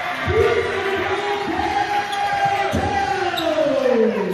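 Basketball bouncing on a hardwood gym floor, about three thuds over a few seconds, under long drawn-out shouts from spectators, one sliding down in pitch near the end.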